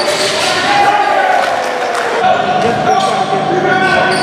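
Live basketball game sound in a gymnasium: a ball bouncing on the court amid players' and spectators' voices.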